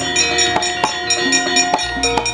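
Javanese gamelan playing: bronze metallophones and gongs ringing in quick, even strikes, about three to four a second, over hand-drum strokes that drop in pitch.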